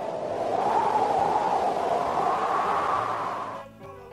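Storm sound effect of rushing wind and surging sea waves: a swell of noise that builds, holds, and dies away shortly before the end.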